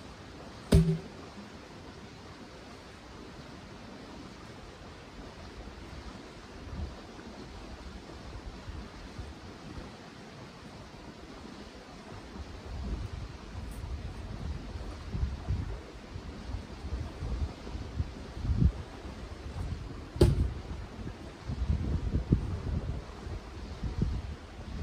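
Heavy logs being shifted by hand: a sharp wooden knock about a second in, the loudest sound, and another about 20 seconds in. Wind gusts buffet the microphone from about halfway through, over a steady outdoor hiss.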